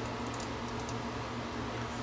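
Faint light clicks and ticks of a small adjustment screw being turned by hand into a metal microscope stand arm, over a steady low hum.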